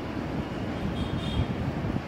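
A pause in the talk filled by a low, uneven rumble of room noise, like air buffeting the microphone.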